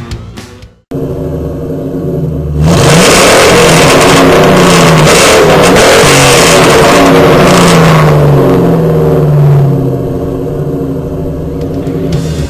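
Ford Mustang GT's 4.6-litre V8 breathing through an off-road H-pipe and SLP Loudmouth mufflers, idling, then revved up about three seconds in and held high for several seconds before falling back to idle near the ten-second mark.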